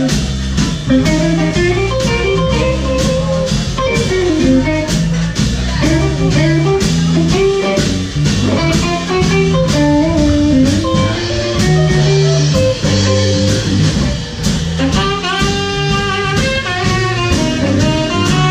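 Live blues band playing, with electric guitar, bass guitar, keyboard and drum kit keeping a steady beat; a bright lead melody comes forward near the end.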